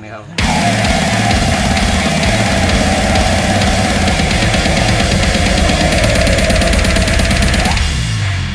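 Brutal slam death metal recording that starts abruptly about half a second in: heavily distorted guitars and bass over fast, dense drumming.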